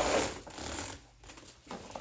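Metal chain strap of a Chanel leather handbag clinking and rattling as it is lifted and laid over the bag. The handling is loudest in the first second, then dies down to a few faint clicks.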